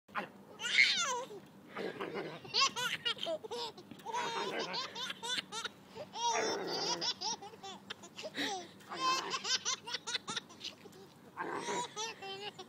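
A toddler laughing, giggles coming in repeated short bursts throughout, the loudest about a second in.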